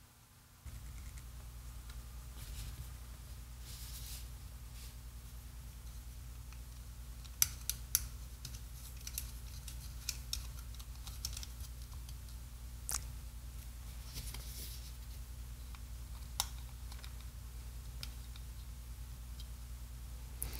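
Light handling noises and a few sharp clicks as a WWII squeeze-lever dynamo flashlight's mechanism is fitted back into its case, over a steady low hum.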